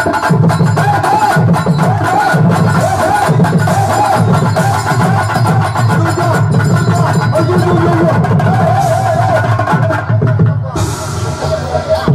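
Live stage-band dance music: drum kit and hand drums keep a steady beat about twice a second under a wavering, ornamented melody line. The beat drops away near the end.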